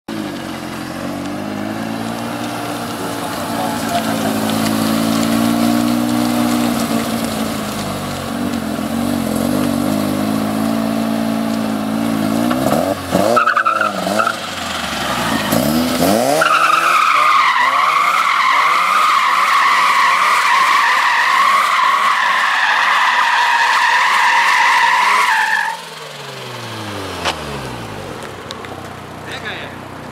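Mazda RX-7 FD3S's 13B-REW twin-rotor rotary engine, converted to a single Garrett T04E turbo, revving up and down for about thirteen seconds. The tyres then squeal steadily for about nine seconds as the car spins a donut, cutting off suddenly, after which the engine note falls away.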